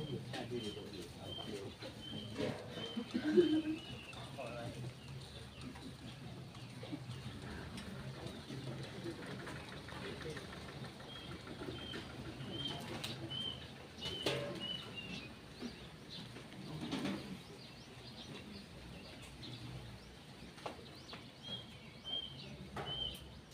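A small bird repeating a short high note about twice a second, in runs near the start, in the middle and at the end, over a low murmur of voices. Scattered sharp clinks and knocks of serving utensils against metal alms bowls and trays, the loudest about three seconds in.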